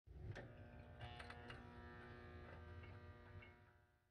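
Near silence: a faint low hum with a few soft clicks, fading out near the end.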